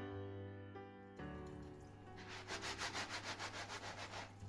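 Soft piano music, then from about halfway in a rubber-gloved hand scrubbing a ceramic plate in fast, even back-and-forth strokes.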